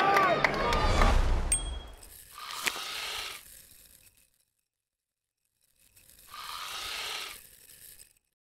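Stadium crowd noise and voices that cut off about a second and a half in. Then the sound effects of an animated logo outro: a brief electronic tone, and two short swelling swooshes about four seconds apart, with near silence between them.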